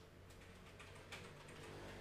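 Faint, irregular light clicks over quiet room tone.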